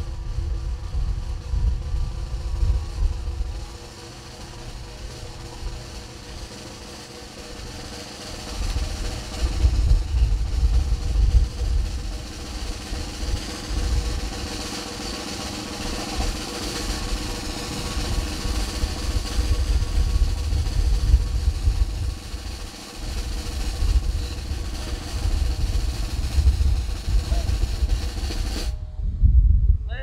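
Military band music with drums, played outdoors during the posting of the colors, with wind rumbling on the microphone in gusts. The sound breaks off abruptly near the end.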